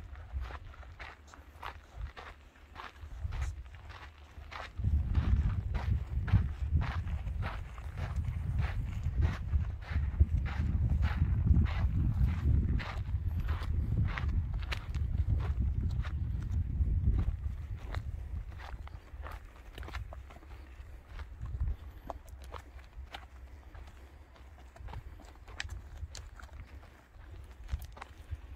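Footsteps on a stony dirt trail at a steady walking pace, about two steps a second. A low rumble comes in about five seconds in and fades out around seventeen seconds.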